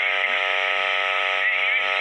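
A long, steady buzzing tone with many overtones, held at one unchanging pitch over a constant hiss.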